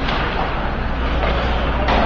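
Steady indoor ice-rink ambience: a low hum with an even hiss over it and no distinct events.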